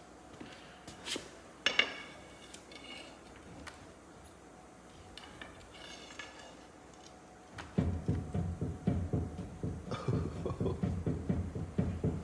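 A few light metallic clinks, then from about eight seconds in a run of rapid low knocks and rattles as a jacked-up bus front wheel is forced by hand. The wheel won't spin even though it is off the ground: it is dragging, which the mechanics put down to a wheel bearing or a stuck brake.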